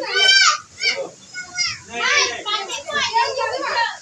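Children's excited voices and calls, with a loud, very high-pitched child's squeal at the start.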